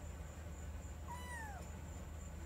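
Kitten giving one short, high meow about a second in, falling in pitch as it ends.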